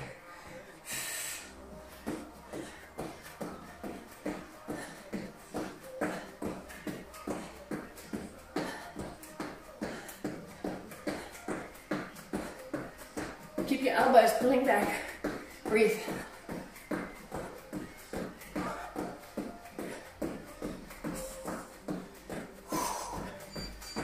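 Feet landing on a rubber gym floor in a steady jumping rhythm, about three landings a second, from twisting jumps in place, over background rock music. A brief voice rises over it about halfway through.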